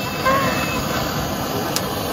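Handheld butane torch on a gas canister, its flame jet hissing steadily into charcoal and wood to light a fire pit.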